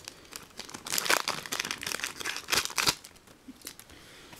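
Foil trading-card booster pack wrapper crinkling and tearing as it is opened by hand, in irregular rustles that are loudest about a second in and just before three seconds.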